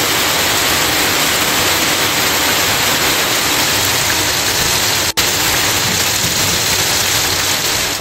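Heavy rain pouring down on a road, a loud, even hiss. It cuts out for an instant about five seconds in.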